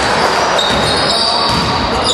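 Basketball game play in a sports hall: the ball bouncing on the court and players' voices over echoing gym noise.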